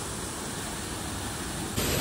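Waterfall in full flow: a steady rush of falling, splashing water.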